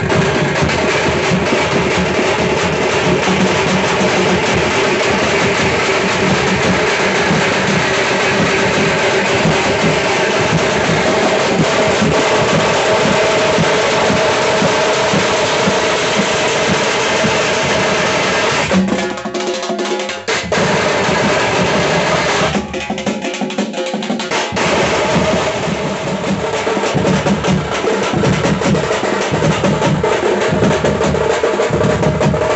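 A bandset drum ensemble: large rope-tensioned bass drums beaten with curved sticks, with smaller side drums played with thin sticks in a fast, dense, continuous rhythm. The deep bass drums drop out briefly twice, about two-thirds of the way in, while the lighter drumming carries on.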